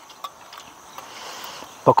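A metal spoon stirring tea in a small enamel cup, clinking lightly against the cup a few times.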